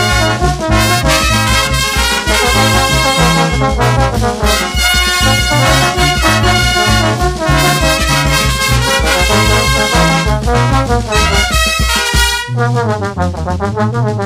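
Brass band playing: trumpets and trombones carry the tune over sousaphone bass notes and a steady drum beat. Near the end the drums drop out and the brass plays on alone.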